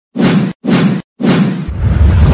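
Three loud whoosh sound effects in quick succession, about half a second apart, the third running straight into a deep low boom.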